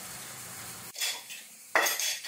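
Metal clanks from a homemade steel cinder-block lifting tool: a light clink about a second in, then a louder, sharp metal clank near the end as the tool is taken up by its handle.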